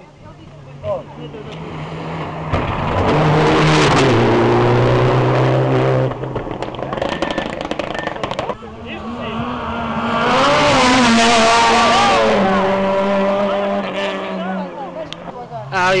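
Rally car engines at full throttle on a special stage, revving hard with pitch rising and stepping with gear changes. The sound is loud twice: about three to six seconds in and again from about nine to fourteen seconds.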